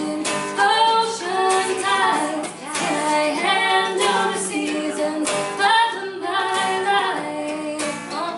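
A woman singing a pop-song lead, backed by a small group of voices in close harmony, over strummed acoustic guitar.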